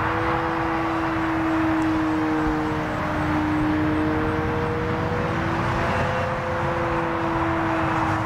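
Graupner Husky 1800S model airplane's electric motor and propeller giving a steady drone, its pitch wavering slightly as the plane flies, over a background hiss.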